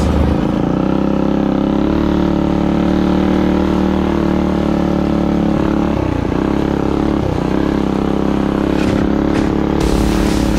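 Small single-cylinder minibike engine running under steady throttle on a dirt trail. Its pitch drops and picks back up twice about two-thirds of the way through as the throttle is eased and reopened.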